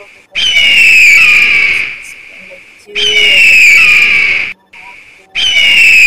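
Bald eagle calling: a high, slightly falling, chattering whistle lasting over a second, given three times about every two and a half seconds.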